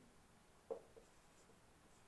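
Faint squeaks of a marker writing on a whiteboard, a few short strokes, the clearest a little under a second in, over near silence.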